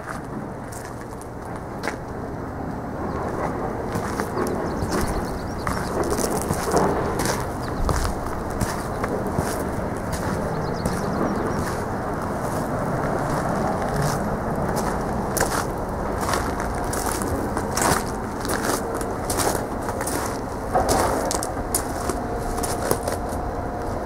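Footsteps crunching on gravel: an uneven run of short crackles and crunches over a low rumble.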